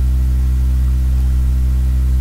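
A steady, loud low electrical hum with a buzzy edge, unchanging throughout. It is the kind of mains hum a microphone or its cable picks up.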